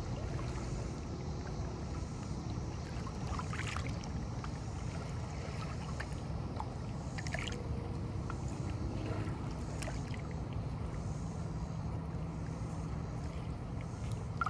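Small lake waves lapping against shoreline boulders: a steady low wash of water, with a few brief splashes and slaps scattered through.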